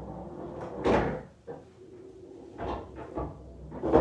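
Knocks and thuds from play on a coin-operated pool table: a loud thud about a second in, lighter knocks between, and another loud thud near the end.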